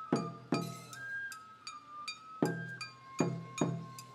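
Live matsuri-bayashi festival music: a high bamboo flute (shinobue) plays a melody of long held notes that step up and down, over a few sharp strikes of a small ringing hand gong (atarigane) and taiko drum hits.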